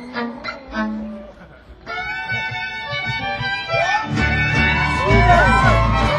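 Live band music in an instrumental passage: a thinner stretch with a brief dip, then sustained held notes, and the full band with heavy bass comes in about four seconds in.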